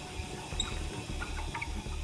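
Wimshurst machine running, a faint low whir with a few soft, high ticks as it builds thousands of volts on the pointed electrode.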